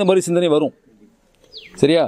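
A man speaking Tamil into a handheld microphone in two short bursts, with a pause of about a second between them.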